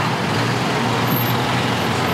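A box truck's engine running close by, a steady loud rumble mixed with street traffic noise.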